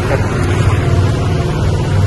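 Golf-cart taxi's motor running at a steady low hum as it drives along.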